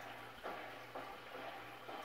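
Quiet room tone with a faint, steady low hum from a running aquarium filter, and two faint soft noises, about half a second in and near the end.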